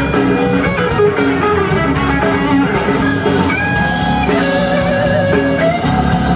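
Live blues-rock band playing an instrumental passage: electric guitar to the fore over bass guitar and a drum kit keeping a steady beat.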